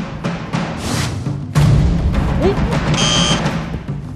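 Dramatic background music with heavy timpani-like drums, which gets louder about one and a half seconds in. Near the end comes a short high buzzer-like sound effect marking a missed hat toss.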